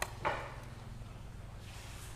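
Chopped chilies tipped from a plastic plate onto a large pan of braised pork: a faint click and a brief soft rustle just after the start, fading within half a second, over a low steady hum.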